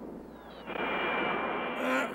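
Sci-fi film sound effect for a flying saucer: a hissing whoosh with a faint falling whistle that swells, about two-thirds of a second in, into a louder steady hiss carrying a high, even whistle tone.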